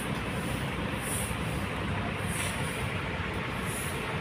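Diesel bus engines idling, a steady low rumble with no rise or fall.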